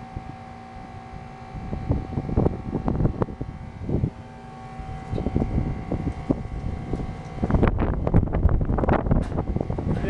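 Dust-storm wind buffeting the microphone in irregular gusts, which come stronger and closer together from about three-quarters of the way in, over a steady faint hum.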